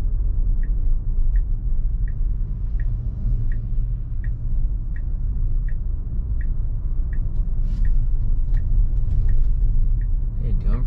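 Inside an electric Tesla Model Y's cabin: steady low road and tyre rumble, with the turn-signal indicator ticking evenly about one and a half times a second as the car takes a turn at an intersection. The ticking stops shortly before the end.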